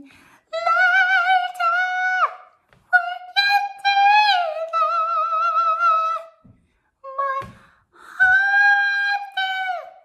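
A woman singing very high, held notes with vibrato, unaccompanied, in three long phrases and one short one, the long phrases ending with a downward slide.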